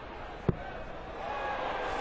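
A steel-tip dart strikes a bristle dartboard once, a short sharp thud about half a second in, over steady arena background noise.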